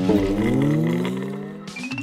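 A pitch-bending synth sound effect: several tones slide apart, some rising and some falling, and fade out over about two seconds, with a short high rising tone near the end.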